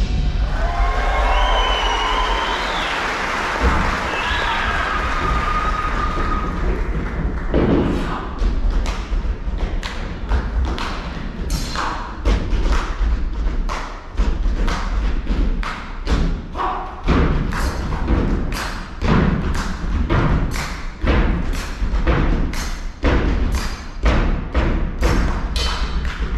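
Live audience cheering and whooping, then from about seven seconds in a stage percussion routine of sharp thuds and knocks struck in a fast, steady rhythm.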